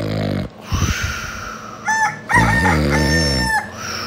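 A rooster crowing once, cock-a-doodle-doo, its long last note held for over a second before it cuts off: a wake-up call. A short low sound comes before it at the start.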